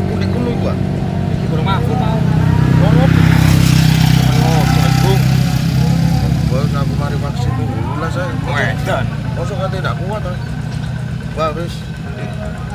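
A motorcycle engine running with a steady drone that grows louder a few seconds in and fades away at about seven and a half seconds, with voices talking over it.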